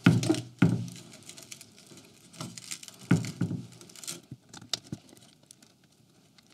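Rustling and scraping of a braided cable sleeve and wires being handled and pressed into the aluminium rail channel of a laser engraver's frame, with small sharp clicks. It is loudest at the start and again about three seconds in, then thins to light ticks.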